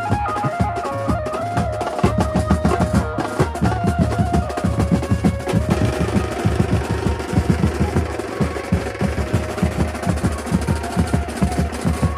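An Indian banjo band plays through horn loudspeakers: an amplified banjo melody rides over fast, dense drumming on snare and tom drums. About halfway through the melody drops back and the drum roll carries on.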